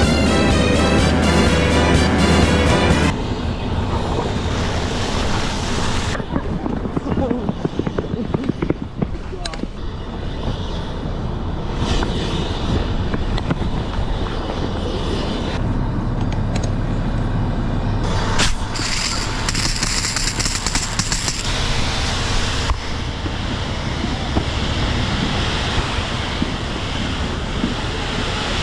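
Music that cuts off about three seconds in, then the rushing hiss of water spraying from a fire hose nozzle, changing abruptly several times.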